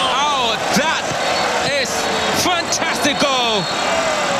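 Excited shouting voices over continuous stadium crowd noise, reacting to a goal scored from a free kick.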